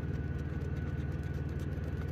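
A coin scraping the latex coating off a scratch-off lottery ticket, faint and irregular, over a steady low engine-like hum and a thin steady whine.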